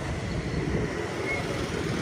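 Steady city street traffic: cars and motorbikes running past.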